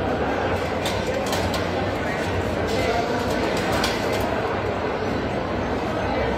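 Steady crowd chatter in a large hall, with a handful of light, sharp knocks of a knife on a plastic cutting board between about one and four seconds in.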